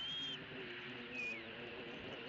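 Thin, high whistled bird calls: a held note at the start, then a short falling note a little over a second in.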